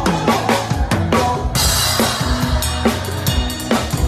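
Live brega band playing an instrumental passage: drum kit with regular bass drum and snare hits over a bass line and electric guitar. A cymbal crash comes in about a second and a half in.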